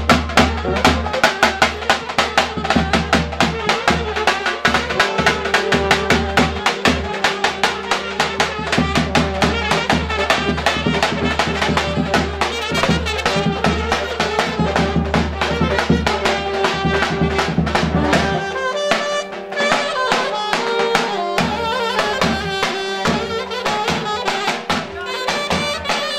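Live traditional wedding street music: a large double-headed bass drum beaten in a fast, even rhythm under a reed wind instrument playing the melody. A deep low drone under the music stops about two-thirds of the way through.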